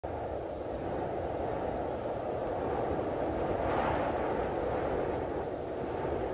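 Steady low rushing rumble of noise that swells briefly about four seconds in.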